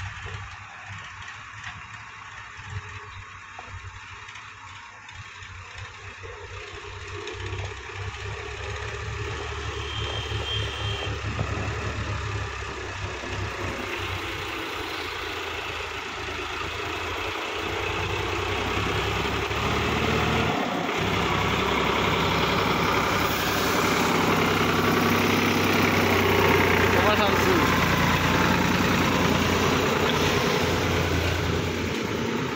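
Sonalika DI tractor's diesel engine labouring as it hauls a trailer loaded with soil up a muddy track, getting steadily louder as it comes close.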